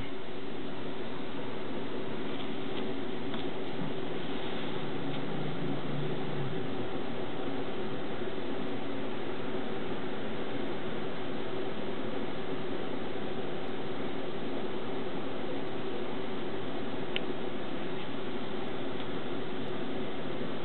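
Steady fan-like hum and hiss at an even level, with a faint click or two.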